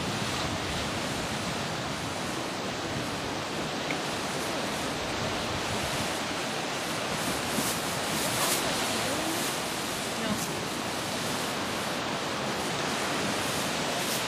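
Steady rushing noise of lake waves breaking on a rocky shore, with wind.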